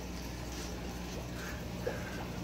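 Steady low hum of running aquarium pumps and filters, with a faint hiss behind it and a small tick near the end.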